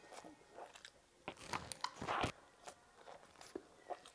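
Close-miked chewing of a mouthful of food, with a run of crisp crunches, the loudest about two seconds in, and a few smaller ones after.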